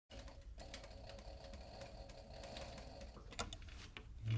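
Industrial flatbed sewing machine running faintly as it stitches, with a steady mechanical hum. A few sharp clicks come about three and a half seconds in.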